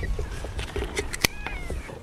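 A cat meowing once, a short thin call that falls slightly in pitch, just after a single sharp click a little past the middle.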